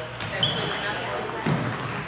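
Table tennis ball clicking a few times off paddle and table, with short squeaks of shoe soles on the hall floor and voices from the hall behind.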